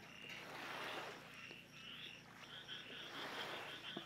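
Faint chorus of frogs calling in the background, short high calls repeating in quick runs.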